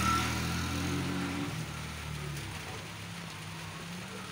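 Small step-through motorcycle engine pulling away, steadily getting quieter as the bike rides off.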